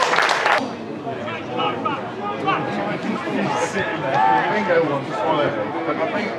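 Several people chatting indistinctly, voices overlapping, among spectators at a football match. A loud rush of noise cuts off about half a second in.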